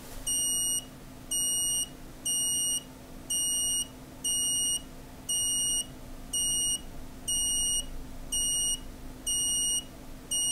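Small beeper on an ESP8266 Wi-Fi LED clock, still covered with tape, sounding its meal-time alert: a steady string of short, high-pitched beeps, about one a second.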